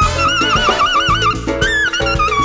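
Latin big band jazz: a horn holds a high note with a wide, fast shake for about a second, over walking bass, piano and percussion, then the band carries on.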